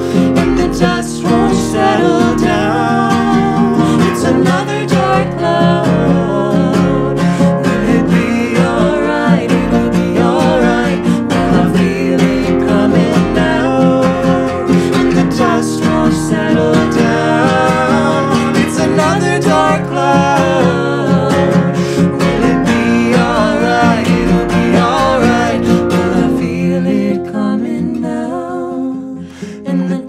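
Acoustic guitar strummed while a man and a woman sing together, their voices sliding in pitch. The music grows quieter near the end.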